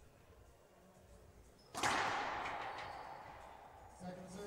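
Quiet room tone, then about two seconds in a sharp crack of a racquetball serve, racquet on ball into the front wall, echoing in the enclosed court and fading slowly.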